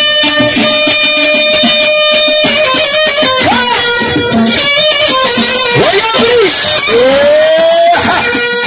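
Loud live band music played through amplifiers, led by plucked string instruments over a steady beat. A long held note runs through the first half, and several notes slide up and down in pitch in the second half.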